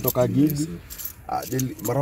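Men's voices in short vocal sounds without clear words, with a few light metallic jingles.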